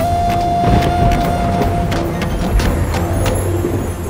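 Dramatic background score: a long held note that stops about two seconds in, then a lower note, over repeated drum hits and a low rumble.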